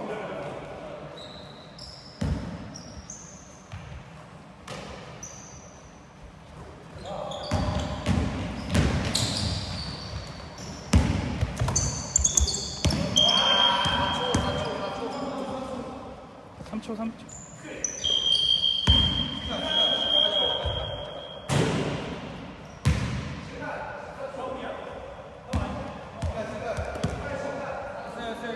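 A basketball bouncing on a hardwood gym floor, with sharp thuds echoing in a large hall, and players' voices calling out. Two high, steady squeaks come about halfway through.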